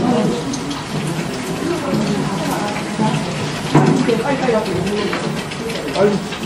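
Milky rice slurry pouring in a steady stream from a large metal bowl into a cooking pot, with voices chattering over it.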